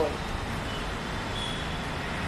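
Steady outdoor background noise: the low rumble and hiss of distant city traffic, with no distinct events.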